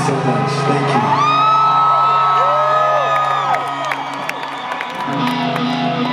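Concert crowd cheering, with many rising and falling whoops and whistles, over a steady low held synth drone from the stage.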